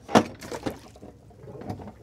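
Stainless-steel swim ladder being unfolded and swung down from a boat's swim platform: one sharp metal clack just after the start, then a few softer knocks and a little water noise as it goes into the water.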